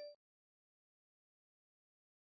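Dead silence, where the sound track drops out completely, after the last ring of an edited-in chime fades away at the very start.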